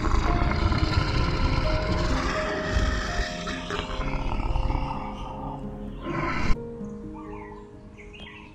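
A big cat growling, one long rough call lasting about six seconds that cuts off suddenly, over soft piano music.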